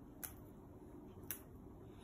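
Quiet room tone with two faint, brief clicks, about a quarter second and a second and a third in, as fresh herb leaves are torn by hand over a bowl of soup.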